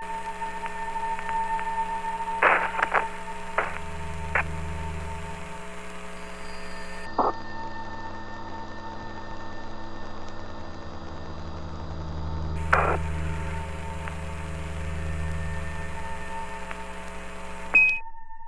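Space-to-ground radio channel carrying steady hum and hiss, broken by a few sharp crackling clicks and ending in a short high beep.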